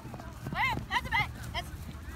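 Children shouting while playing soccer: a quick run of short, high-pitched calls between about half a second and a second and a half in, over a steady low rumble.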